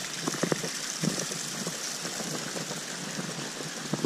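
Shallow stream trickling over rock ledges: a steady rush of water with frequent small, irregular gurgles and splashes.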